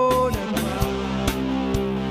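A rock band playing live: electric guitars, bass guitar and drum kit in an instrumental passage, the drums striking about twice a second. A held note that bends in pitch fades out in the first half second.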